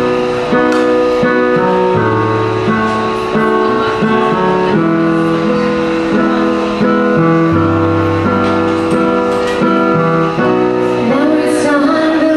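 Digital keyboard playing a piano sound, a slow chordal intro with sustained chords and low bass notes changing every couple of seconds. A woman's singing voice comes in near the end.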